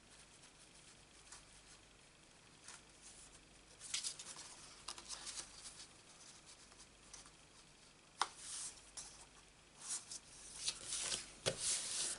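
Paper and cardstock being handled and pressed down by hand: soft rustling and sliding of sheets against each other and the work surface, starting a few seconds in after a quiet stretch. A single sharp tap about eight seconds in.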